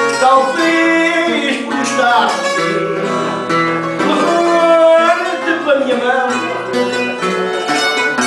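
Fado accompaniment on guitarra portuguesa and viola (classical guitar): an instrumental passage of plucked melody over strummed chords between the sung verses, with some notes wavering in vibrato.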